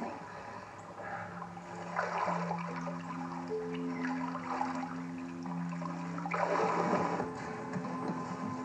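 Water sloshing and splashing around people in a pool, with a louder surge near the end, under soft film-score music of long held notes.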